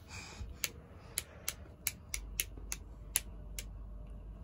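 A series of about ten sharp clicks at an uneven pace, following a brief soft hiss at the start.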